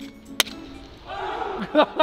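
Two sharp claps, then a few men cheering and whooping together from about a second in.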